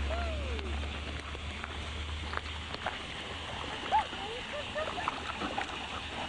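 Trout splashing at the pond surface as they take thrown fish food: many small, scattered splashes.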